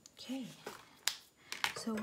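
A single sharp click about a second in, from a pen being put down on a wooden tabletop, between short bits of a woman's voice.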